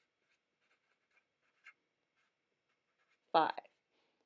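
A Sharpie marker writing on paper: a run of faint, short pen strokes as a word and number are written out by hand. One word is spoken near the end.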